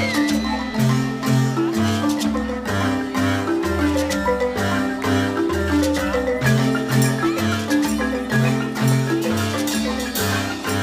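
Marimba ensemble playing a repeating, interlocking pattern of struck wooden-bar notes, with deep bass marimba notes underneath.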